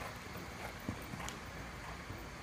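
Hoofbeats of a ridden Anglo-Arabian stallion on soft arena dirt: a few dull thuds, the loudest just under a second in.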